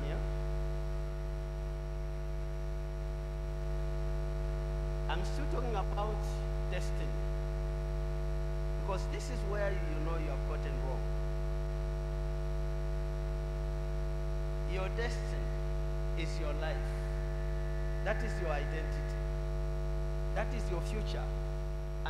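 Steady electrical mains hum from the sound system: a constant low buzz with a ladder of overtones above it, unchanging in level.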